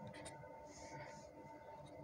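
Faint strokes of a felt-tip marker writing on paper.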